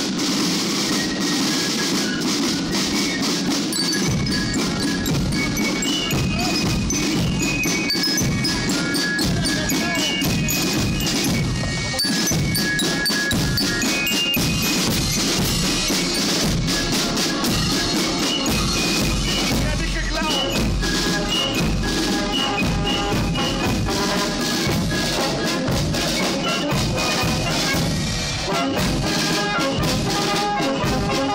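A marching band playing a march: snare drums and a bass drum keep a steady beat while bell lyres (glockenspiel) ring out the tune in short high notes. The drumming comes in strongly about four seconds in.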